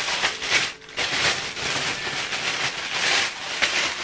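Crinkly paper or plastic packaging being handled close to the microphone: a continuous, irregular rustling and crinkling with a brief lull about a second in.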